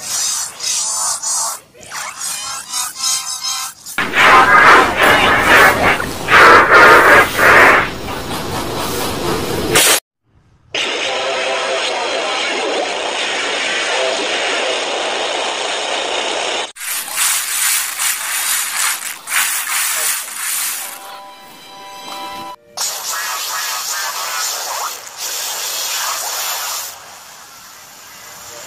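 A run of short, loud audio clips played back one after another, music with voice-like sound, processed with pitch and volume changes to build the 'G Major 2' meme effect. The clips change abruptly about every five seconds, with a brief silence near the middle.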